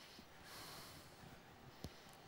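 Near silence: room tone, with a single faint click near the end.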